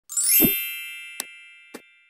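Channel intro logo sound effect: a quick upward sweep into a bright chime of several tones that rings and fades away, with two short clicks, about a second in and near the end.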